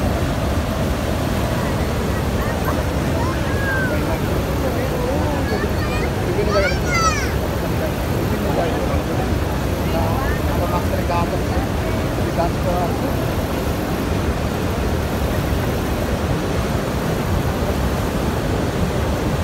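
Steady, loud roar of the Niagara River rapids rushing toward the falls, with faint voices of people nearby.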